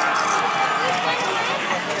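Busy crowd of people talking at once: a steady outdoor hubbub of many overlapping voices.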